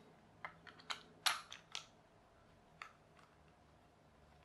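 Light plastic clicks and taps as a GoPro-style tripod mount adapter and its thumbscrew are fitted to a clear plastic action-camera waterproof case: a quick run of clicks in the first two seconds, then one more a second later.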